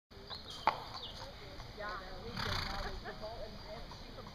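Indistinct voices of people talking at a distance, with a sharp click just under a second in and a brief rush of noise at about two and a half seconds.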